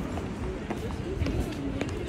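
Street sound of passers-by talking, with sharp footstep clicks of heels on the pavement.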